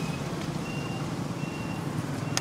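A vehicle's electronic warning beeper sounding short, high, single-pitch beeps about every three-quarters of a second, over a low engine rumble from traffic.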